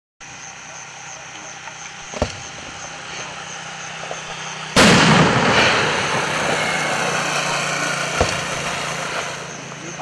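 Fireworks going off: a sharp crack about two seconds in, then a sudden loud bang about five seconds in whose rumble fades slowly over the next few seconds, and another crack near the end.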